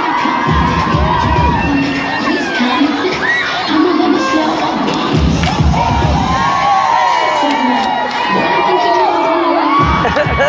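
A large crowd cheering, shouting and whooping over loud dance music, its heavy bass surging in and out a few times.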